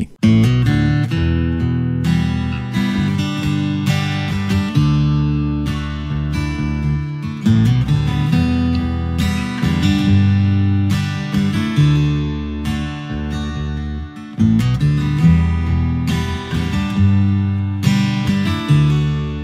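Instrumental opening of a recorded song: strummed acoustic guitar chords over low sustained notes, starting abruptly.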